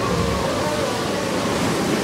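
Sea surf sound effect: a steady, unbroken wash of waves.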